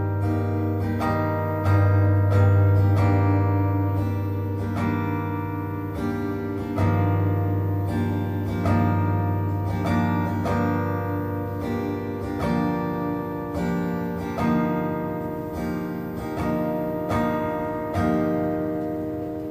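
Acoustic guitar played with the fingers in an instrumental passage, without singing: chords are struck every second or two, with single notes picked between them, and each is left to ring and fade.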